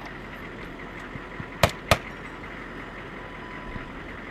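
Two sharp gunshots a quarter second apart, a little under two seconds in, over the steady low running sound of an idling military Humvee.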